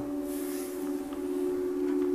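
Background music: a steady, held two-note chord with no rhythm.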